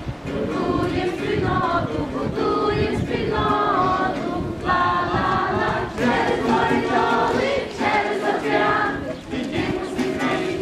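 A group of children singing a hayivka, a Ukrainian Easter round-dance song, together in unison in phrases, with an acoustic guitar accompanying them.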